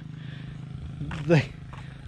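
A steady low mechanical hum runs under a pause in a man's talk, and he says a single word about a second in.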